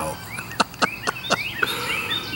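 Wild birds chirping: a quick run of four or five short downward-sweeping chirps, followed near the end by a few thin, high whistled notes from another bird.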